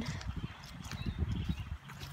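Wind buffeting a phone's microphone: an irregular low rumble with soft thumps.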